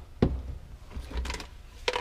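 Things being handled on a workbench: a sharp knock about a quarter second in, then softer rubbing and clattering as items are moved around, and a click near the end.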